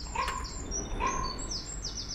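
Small birds singing and chirping, with a fast run of repeated high chirps near the end and two short lower notes about a second apart.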